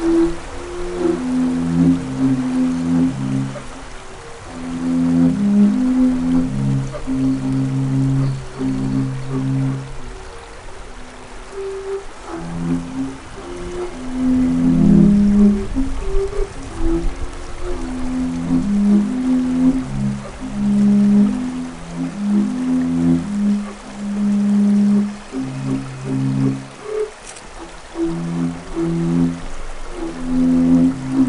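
Ensemble of low-pitched Amazonian wind instruments playing short held notes that overlap and interlock, several pitches sounding at once. The playing thins out briefly around four seconds in and again near the middle.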